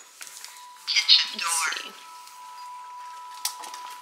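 A glass patio door being opened for the dogs: a clatter about a second in, then a short squeak. A faint, steady high tone runs underneath from about half a second in.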